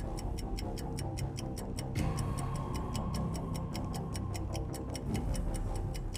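Game-show countdown clock sound effect ticking evenly, several ticks a second, over a low suspense music bed. It marks the contestant's 20-second answer time running down.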